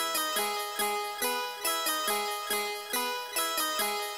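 Background music: a melody of short plucked, harpsichord-like notes, evenly spaced at about two to three a second, each dying away, with no bass underneath.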